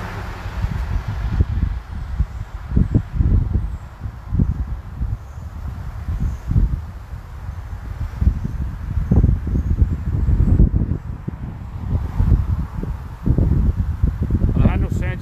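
Wind buffeting an outdoor microphone: a loud, gusting low rumble that surges and dips every second or so.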